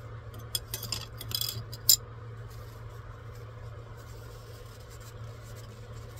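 A plastic scraper and resin vat scraping and clinking against a stainless-steel funnel as leftover resin is scraped off the vat into the bottle. A run of small clinks ends in one sharp clink about two seconds in, over a steady low hum.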